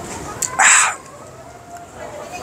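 A short, sharp breathy exhale about half a second in, preceded by a small click: a man breathing out through his mouth after a sip of strong homemade liquor.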